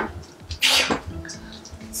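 A girl's short, breathy exhale of relief, a "phew", about two-thirds of a second in.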